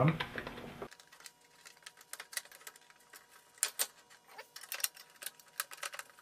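Irregular light clicks and taps of metal case panels being handled and slid into place on an audio interface's chassis, starting about a second in.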